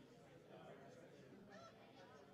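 Faint, distant chatter of people talking in a room, with a short higher-pitched voice sound about one and a half seconds in.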